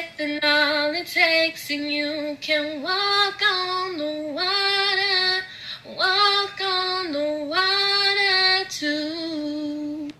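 A young woman singing solo without accompaniment, in long held, wavering notes with short breaks between phrases. She is flat on some notes, in the hosts' hearing.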